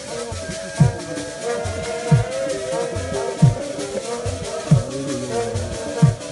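A group of voices singing together to a deep drum struck about once every 1.3 seconds, with a fast, even rattle running over it.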